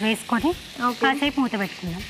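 Rice and vegetables sizzling as they are stirred with a wooden spatula in a frying pan, under a woman talking almost without a break.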